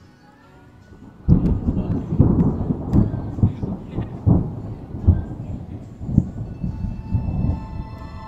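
Thunder: a sudden clap about a second in, followed by a rolling rumble that fades out over several seconds.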